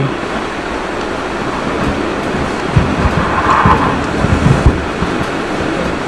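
Steady hiss-like background noise with a low rumble, and a few low bumps about halfway through.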